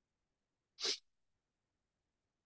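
A single short, breathy noise from the person recording, about a second in, such as a quick sniff or sharp breath.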